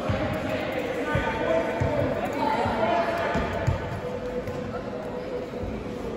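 A football being kicked and bouncing on the hard floor of a large indoor sports hall: about half a dozen echoing thuds in the first four seconds. Players' voices and shouts carry across the hall throughout.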